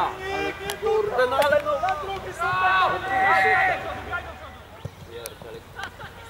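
Players and onlookers calling out indistinctly during a football match, quieter after about four seconds.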